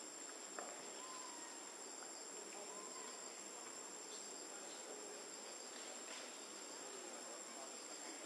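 Faint, steady high-pitched insect drone, with a single soft click about half a second in.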